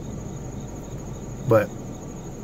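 Insects trilling steadily in the background: a continuous high, thin, faintly pulsing tone over a low hum. A single short spoken word comes about one and a half seconds in.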